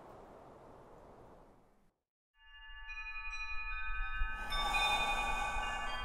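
A faint hiss that fades to silence about two seconds in. Then shimmering chimes: many ringing bell tones enter one after another over a low rumble and build in loudness.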